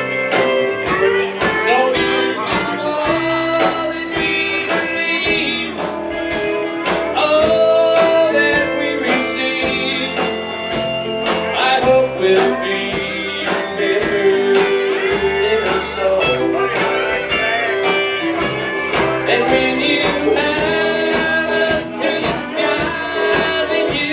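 Live country band playing an instrumental stretch of the song, with electric guitars picking quick melodic lines over a steady drum beat.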